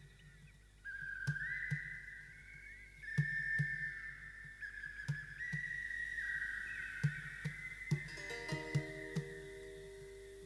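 Ambient new-age music: a high melody of long held notes that slide from one pitch to the next, over soft, irregular low taps. A cluster of short, lower notes comes in near the end.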